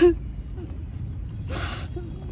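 A woman crying: a brief choked, whimpering catch of the voice at the start, then a sharp gasping in-breath between sobs about a second and a half in.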